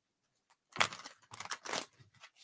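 Tarot cards being handled: a quick run of papery rustles and flicks that starts about three-quarters of a second in and lasts about a second.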